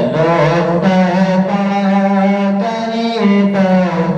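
A man's voice singing Urdu verse in long, held, gliding melodic lines.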